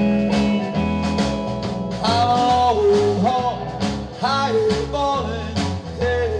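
Live honky-tonk rockabilly trio playing an instrumental break: drums keep a steady beat under an electric bass line. About two seconds in, a Telecaster lead comes in with bent and sliding notes.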